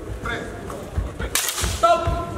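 A single sharp crack of steel longswords striking, about one and a half seconds in, ringing briefly in a large hall, followed straight after by a loud shouted call. Voices murmur in the background.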